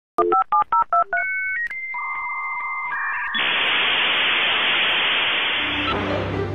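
Dial-up modem connecting: a quick run of touch-tone dialing beeps, then a series of steady handshake tones stepping between pitches, and from a little past halfway a steady loud hiss of the modems negotiating the connection.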